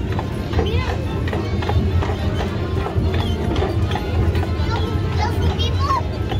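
A horse's shod hooves clip-clopping at a walk on a brick street as it pulls a horse-drawn streetcar, with background music and crowd voices.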